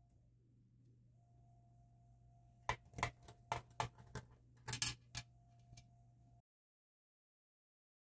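A quick irregular run of light metallic clicks and taps, about eight of them over three seconds, as a screwdriver is set against a controller's metal back panel and its D-sub jack screws, over a faint steady hum.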